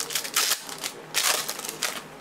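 Panini Prizm basketball cards being handled and shuffled by hand: crisp rustling and clicking in two bursts, the second starting about a second in.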